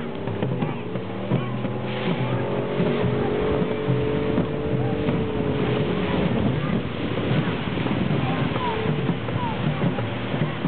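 Motorboat engine running under way, a steady hum that is clearest through the middle seconds, with voices behind it.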